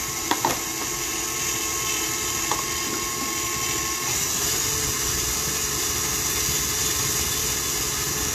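KitchenAid Artisan tilt-head stand mixer running steadily, its flat beater turning a stiff chocolate shortcrust dough in the steel bowl as the dough comes together. A couple of light clicks sound at the start.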